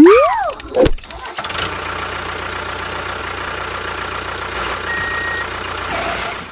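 A few quick sliding whistle-like pitches, then from about a second and a half in a tractor engine starts and runs steadily.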